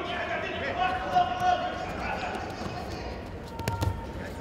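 Shouting voices, typical of coaches calling to the judokas, carrying through a sports hall during a judo bout. A heavy thud comes near the end as a judoka goes down onto the tatami mats.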